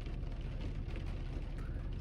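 Faint, steady rain on a car's roof and windows, heard from inside the closed cabin, with a low steady hum underneath.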